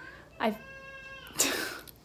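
A child's single high-pitched call, held at a steady pitch for about a second, from a girl who has locked herself in the bathroom.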